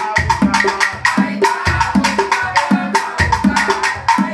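Afro-Cuban cajón espiritual drumming: conga drums and a wooden cajón played by hand, with a fast, steady stick pattern struck over the lower drum strokes.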